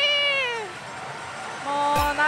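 A woman's high-pitched, drawn-out shout of "Let's party!", its last vowel sliding down in pitch and fading, over the steady noise of a pachislot hall. Talking starts again near the end.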